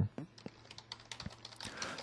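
Computer keyboard being typed on: a run of short, soft, separate keystrokes.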